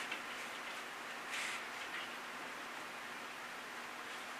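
Quiet room tone: a steady, even hiss with no voice, and one faint short sound about a second and a half in.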